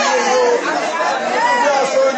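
Speech only: voices talking, with nothing else standing out.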